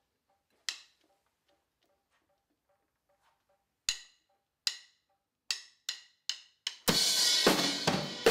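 Studio drum kit: a single sharp hit, faint even ticking, then a run of hits coming closer and closer together, and about seven seconds in the full kit and the rest of the song come in loudly.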